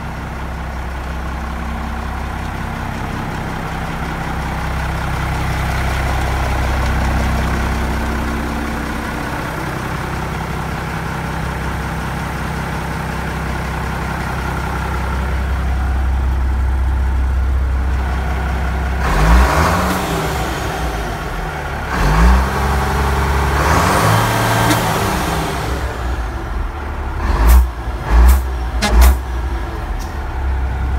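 A heavy military truck's diesel engine running steadily at idle. After about two-thirds of the way through it revs up and down a few times, and near the end there are a few sharp knocks.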